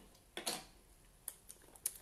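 Small makeup items being handled: a short soft swish about half a second in, then a few light clicks and taps.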